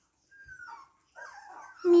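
Young Siberian husky puppy giving a faint, thin whimper that falls in pitch, then a few soft little squeaks, as it drifts off to sleep.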